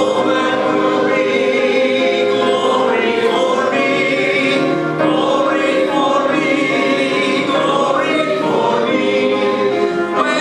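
A congregation singing a hymn together in many voices, with long held notes.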